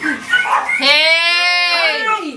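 A dog's long whining howl, one drawn-out call of about a second that falls in pitch at the end, after brief voice sounds.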